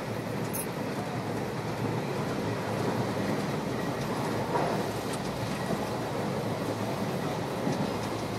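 Running noise of a moving Indian Railways passenger coach heard from inside the compartment: a steady rumble of the carriage travelling over the rails.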